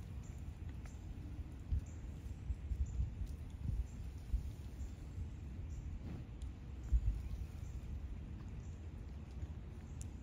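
Wind buffeting the microphone outdoors: an uneven low rumble with gusty bumps, and a few faint clicks.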